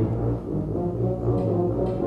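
Brass band playing a soft passage of sustained low brass notes.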